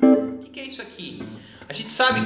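Archtop jazz guitar playing chord-melody voicings, with the melody note on top of each chord. One chord is struck at the start and rings and fades, and softer chords follow about a second in and near the end.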